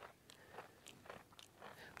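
Near silence, broken by a few faint crunching clicks of a goat chewing pumpkin.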